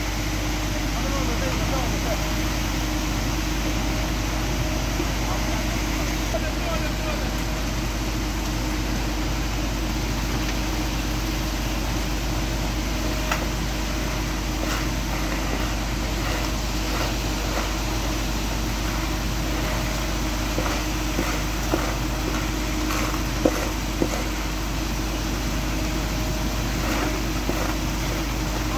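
Concrete mixer truck running steadily with its engine and drum going as it pours concrete down the chute. From about halfway on, shovels scrape and clink in short strokes through the wet concrete and gravel.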